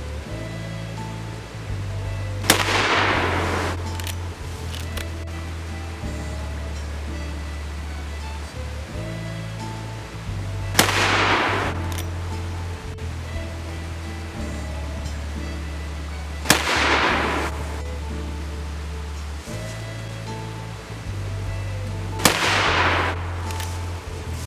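Four rifle shots from a Winchester lever-action carbine, several seconds apart, each trailing off in a long echo, over background music with a deep, steady bass line.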